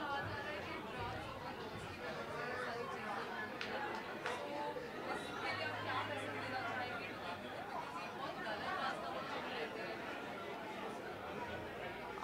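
Indistinct background chatter: several people talking at once, none of them close to the microphones.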